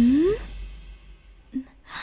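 A short rising vocal sound at the start, like a questioning "hm?", dies away into quiet. A breathy sigh-like exhale follows near the end.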